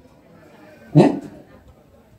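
A short spoken interjection, "eh", about a second in, rising in pitch; otherwise a quiet pause in the talk.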